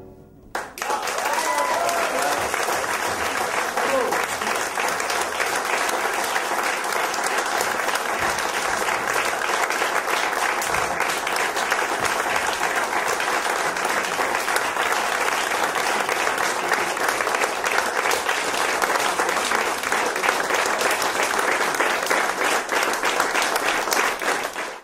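Concert audience applauding, the clapping starting about half a second in and holding steady throughout, with a few voices calling out in the first seconds.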